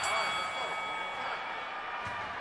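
Advert soundtrack: a dense, steady wash of noise like crowd murmur, with several sustained high musical tones held over it.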